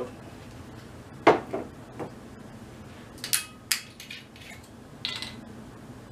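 Glass bottles and shot glasses knocking and clinking against each other and the wooden table as whiskey bottles are handled and set down. There are about six sharp knocks, the loudest just over a second in, with two bright, ringing glass clinks a little past the middle.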